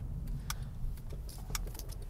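Low steady rumble of a car cabin, with a few faint clicks, the clearest about half a second and a second and a half in.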